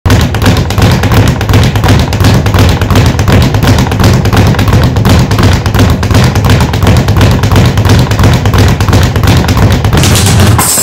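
A speed bag being punched in a fast, unbroken rhythm: a loud, rapid run of thuds and taps, several hits a second.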